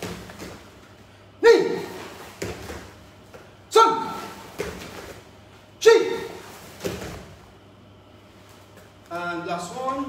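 A man's loud, sharp shouts, three of them about two seconds apart, calling the pace of a karate drill, each followed about a second later by a fainter thud as the karateka spin and land on the mats. Brief talk follows near the end.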